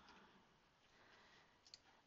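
Near silence: room tone, with one faint computer-mouse click near the end.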